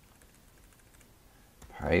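Faint clicks of computer keyboard keys as a mistyped terminal command is deleted and retyped. A voice starts near the end.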